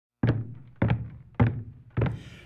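Four low thumps on a steady beat, a little over half a second apart, each ringing briefly before it dies away: a percussive count-in to the song.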